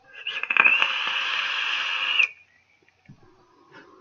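A long draw on a vape: air hissing through the atomizer as the coil fires and sizzles, with crackles near the start. It lasts about two seconds and stops suddenly.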